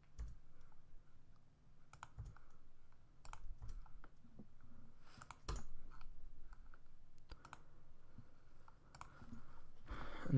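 Computer keyboard keystrokes and clicks, sparse and irregular, as code is typed and edited.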